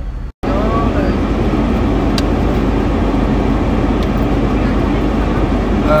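Steady car engine and road noise heard inside the cabin. The sound cuts out for an instant just under half a second in, then comes back louder and keeps going evenly.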